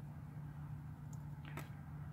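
Quiet background with a faint, steady low hum and a very faint tick about one and a half seconds in.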